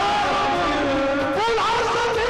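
Qawwali music: a singer holds one long note that slides slowly downward. About one and a half seconds in, a new wavering, ornamented phrase begins.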